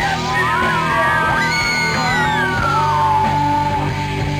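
Live rock band playing electric guitar, keyboard and drums, with yells rising and gliding over the music through the middle and a long held note near the end.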